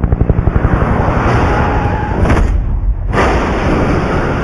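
Action-film sound effects: a fast rattle of sharp pulses in the first second, then a dense rush of noise. A loud blast of an explosion comes about three seconds in.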